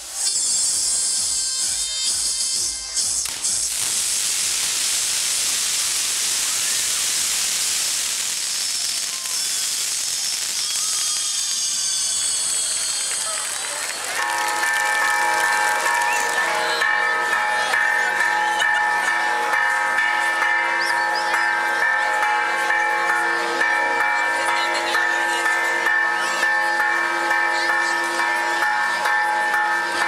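Castillo fireworks hissing as they spray showers of sparks for about the first half. Then, about halfway through, church bells start ringing together and keep up a rapid, even clangour to the end.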